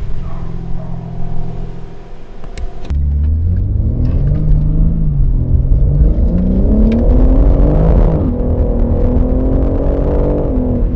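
BMW G80 M3's twin-turbo inline-six on its stock exhaust, heard from inside the cabin while driving: a steady low drone, then about three seconds in the car accelerates hard, the pitch climbing and dropping back as it shifts up, about five and eight seconds in. The stock sound is one the owner finds flat rather than mean or aggressive.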